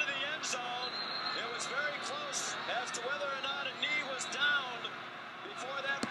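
Stadium crowd noise: many voices shouting and cheering over one another, with short sharp noises now and then.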